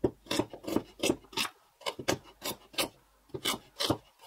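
Steel meat cleaver chopping through a carrot onto a wooden cutting board: a quick run of sharp chops, about three or four a second, with a short pause just before halfway.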